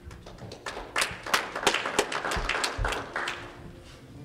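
Congregation applauding briefly: the clapping starts within the first second, is fullest in the middle and fades out before the end. A couple of low thumps come under it.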